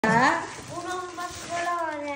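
Speech: a girl's voice, with long drawn-out words in a sing-song pitch.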